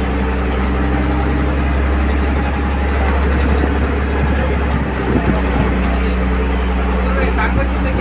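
A boat's engine running steadily, a low even drone.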